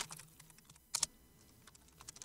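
A few computer keyboard key clicks, typing a stock name into a search box: a sharp click at the start, another about a second in, and fainter taps between.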